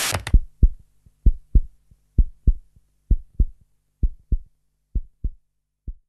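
A brief burst of TV static cuts off right at the start. It is followed by a heartbeat sound effect: low double thuds, lub-dub, about one beat a second, steady and growing slightly quieter toward the end.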